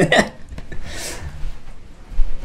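A single brief rasping rub about a second in, close to the microphone: fabric of a shirt brushing near the mic as a person moves past, over a low handling rumble.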